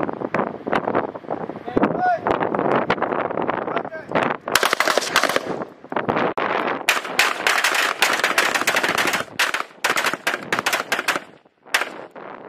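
Several rifles firing at once on a firing line, the shots overlapping in rapid, irregular volleys. They get louder and denser about four seconds in, then break off briefly near the end before one last shot.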